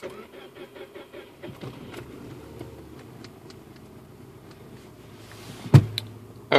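Car engine cold-starting at about 20 °F: a short burst of cranking pulses, then it catches and settles into a steady idle near 880 rpm. A single sharp thump near the end.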